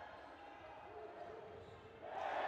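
Faint sports-hall ambience during handball play: scattered voices and shouts, with a ball and players' feet thudding on the court.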